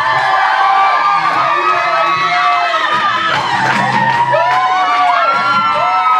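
A group of teenagers cheering and shrieking, many high-pitched voices overlapping, over background music.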